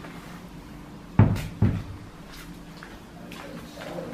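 Two heavy thumps about half a second apart, a little over a second in, over a faint steady low hum.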